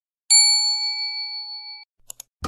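A single bell-like ding sound effect: one strike about a third of a second in, ringing with several clear tones for about a second and a half before it cuts off.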